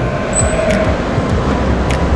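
Steady low mechanical rumble and hiss with a faint constant whine, the background machinery noise of the pool hall.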